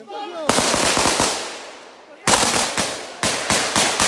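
Machine-gun fire in three rapid bursts: the first about half a second in, the second just past two seconds, the third just past three seconds. Each burst trails off in echoes.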